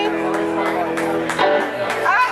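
Live band's electric guitars ringing out on a held chord that stops about one and a half seconds in, followed by voices and crowd noise in the room.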